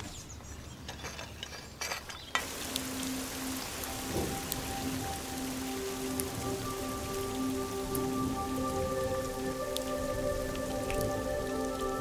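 Steady rain falling, starting suddenly about two seconds in, with single drops hitting now and then. Soft held notes of background music come in under it, a low note first and higher notes joining as it goes on.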